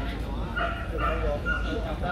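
A dog yipping and whining in several short high cries, over background chatter.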